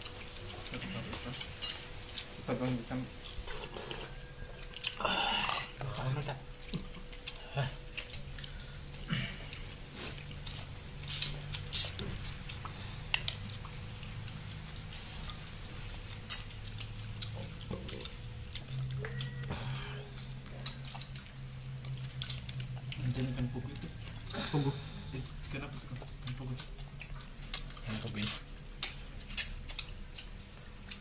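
Scattered clinks, taps and scrapes of plates, bowls and glasses as a meal is eaten by hand, with a few brief low voices.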